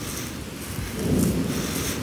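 Rain falling on and around a phone microphone, with a low rumble that swells about a second in.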